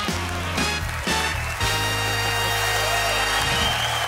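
TV show theme jingle: a few short chords, then a long held final chord ending about half a second before the end, with studio audience applause coming in under it.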